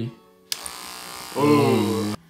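Electric hair clipper with a comb guard switched on with a click about half a second in, then running with a steady buzz.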